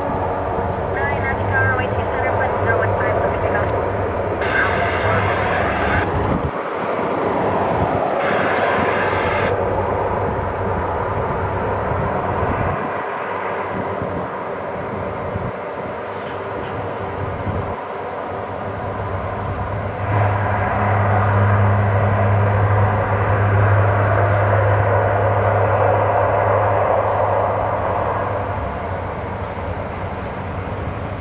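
C-130J Hercules' four Rolls-Royce AE 2100 turboprop engines and six-bladed propellers running at taxi power, a steady propeller drone with a low hum. It grows louder about twenty seconds in and eases a little near the end.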